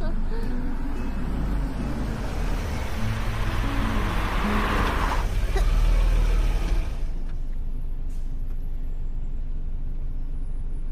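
Car cabin noise while driving: a low road-and-engine rumble with a rushing hiss that swells around the middle and then falls away about seven seconds in.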